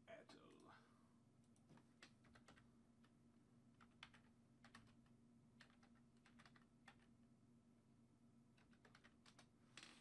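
Near silence with faint, irregular clicks of typing on a computer keyboard, spread out over several seconds, over a low steady hum.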